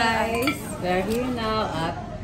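A woman's voice in drawn-out vocal sounds that glide up and down in pitch, with dishes and cutlery clinking in a restaurant dining room.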